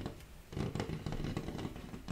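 Hands rubbing and tapping against a wardrobe door, a dense scraping rumble with small knocks that starts about half a second in.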